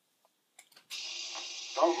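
A few faint clicks, then a steady hiss that starts abruptly about a second in, with a man's voice beginning near the end.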